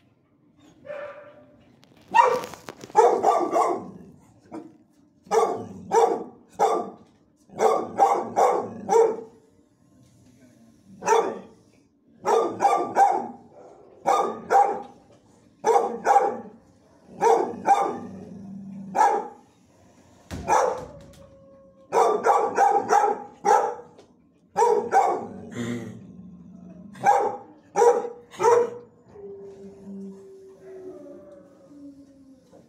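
Dogs barking in shelter kennels, in quick runs of two to four barks separated by pauses of a second or two.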